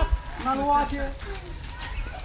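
People's voices talking and calling out, with a short thump just after the start.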